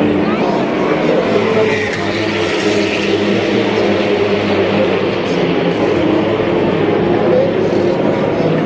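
Race car engines running on the circuit, a steady drone, with crowd voices mixed in.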